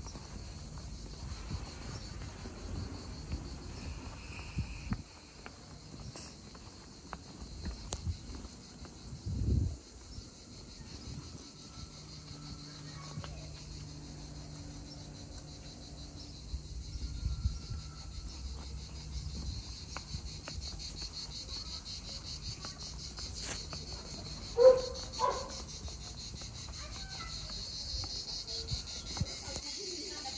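A steady, high-pitched chorus of insects trilling on without a break. A few short knocks and a faint low hum sit under it, and the loudest moment is a brief pitched sound near the end.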